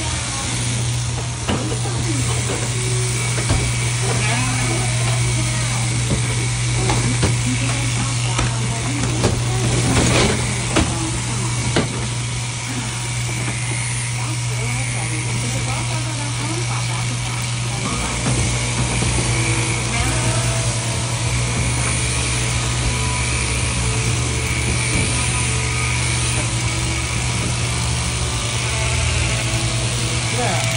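Overhead-driven sheep-shearing handpiece running steadily, cutting through the wool on a ram's head: a constant low motor hum with the clipping noise above it, and a few sharp knocks about ten to twelve seconds in.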